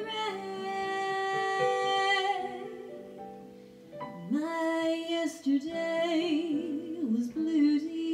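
A woman singing a slow ballad, accompanied on a Casio electric keyboard. She holds a long note that fades out, and a new phrase starts about four seconds in, with held notes sung with vibrato.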